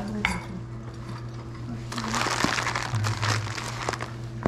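Plastic zip-top bag full of costume jewelry being handled: crinkling plastic with many small metal clinks, thickest from about halfway through to near the end, after a single clink just after the start.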